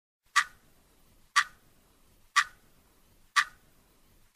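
A clock ticking once a second: four sharp, evenly spaced ticks with silence between them, a ticking-clock sound effect in a programme's opening titles.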